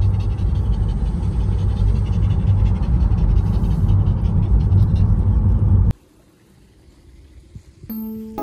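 Car driving along a road, heard from inside the cabin: a loud, steady low rumble of engine, tyre and wind noise that cuts off suddenly about six seconds in, leaving only faint background.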